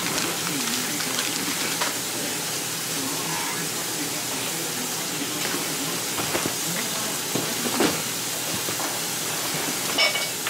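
Plastic snack bags and a paper bag crinkling and rustling as they are handled and packed, with a few sharper crinkles, the loudest about eight seconds in, over a steady hiss.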